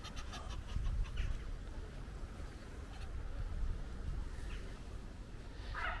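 A few faint calls from fowl, the clearest a short call just before the end, over a steady low outdoor rumble.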